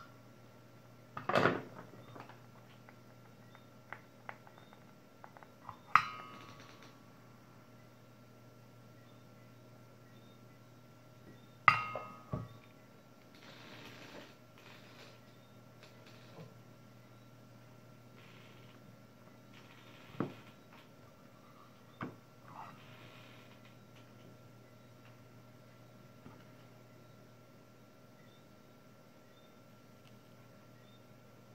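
A few sharp metallic clinks and knocks from metal tools being handled around a soldering iron and its stand, two of them ringing briefly, over a faint steady hum.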